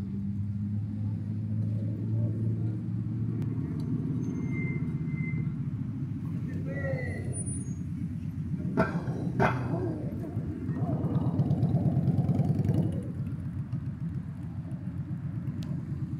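Steady low drone of a car's engine and road noise heard from inside the cabin, a little louder for a couple of seconds past the middle, with two sharp clicks near the middle.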